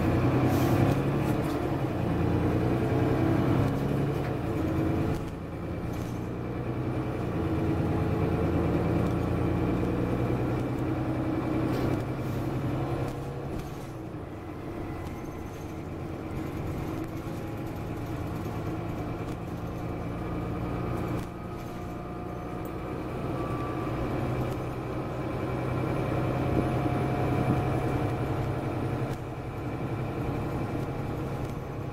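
Mercedes-Benz Citaro single-deck bus under way, heard from inside the passenger saloon: the diesel engine's low drone rises and falls in pitch as the bus accelerates and eases off, over road noise, with a few brief knocks and rattles.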